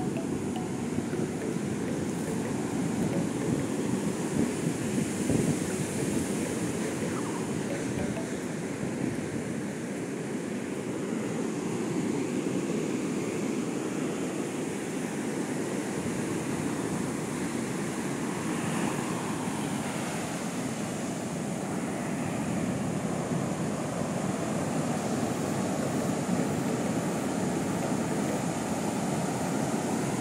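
Ocean surf breaking on a sandy beach: a steady, unbroken rushing of waves, with wind buffeting the microphone.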